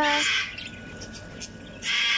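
An aviary bird squawking harshly twice, once at the start and again near the end.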